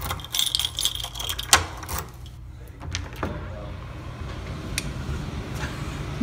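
Keys jangling and a metal doorknob and latch clicking as an apartment door is unlocked and opened, with most of the clicks and jingling in the first two seconds and a few lighter clicks after.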